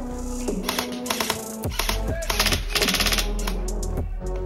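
Background music, overlaid by two bursts of rapid clicking from an airsoft rifle firing full-auto: one about a second in, and a louder, denser one later on.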